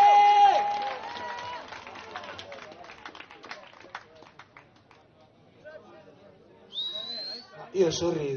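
A rock cover band's song ends on the singer's held final note, followed by scattered clapping and crowd voices from a small outdoor audience. A short rising whistle comes near the end.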